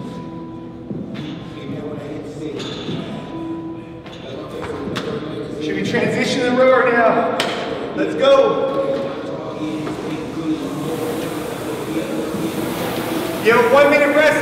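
Background music with a singing voice over a few dull thuds. From about ten seconds in there is the rising whoosh of an air rowing machine's fan as rowing gets under way.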